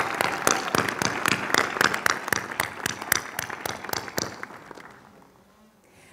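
Audience applauding, fading out near the end.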